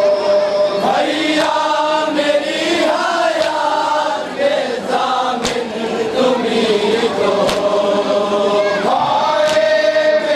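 Group of men chanting a nauha, an Urdu mourning lament, in unison with a melodic, wavering line. A few sharp slaps cut through, about every two seconds in the second half, typical of hands striking chests in matam.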